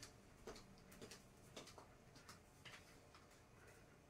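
Faint clicking footsteps of heeled sandals on a wooden floor, about two steps a second, against near silence.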